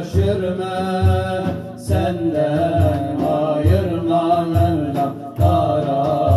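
Male voices singing a Turkish ilahi (Islamic hymn) in long, held, melismatic lines, over a large hand-played frame drum beating a steady rhythm of low thumps about once a second.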